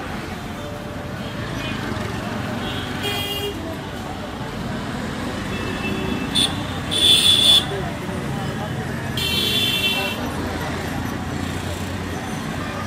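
Street traffic rumbling steadily, with vehicle horns honking four times; the loudest honk comes about seven seconds in and the last is the longest.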